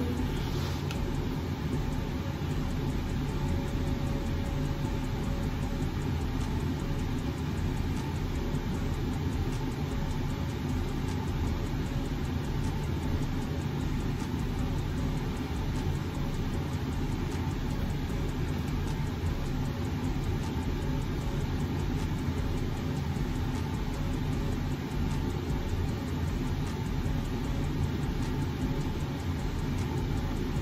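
A steady low hum and hiss of background noise, unchanging throughout, with no speech or music.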